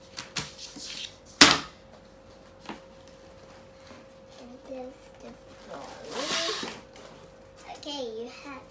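Doll-house panels being handled and lifted out of their cardboard box: a sharp knock about a second and a half in, a few lighter taps, and a rustle of packaging near the end, with a child's faint murmurs and a steady faint hum underneath.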